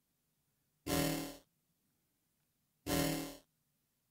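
Bit-crushed electronic cymbal sample from a drum machine app, played twice about two seconds apart, each hit lasting about half a second. The sample runs through a bit-crusher with its gain driven up, giving a distorted, pitched crash.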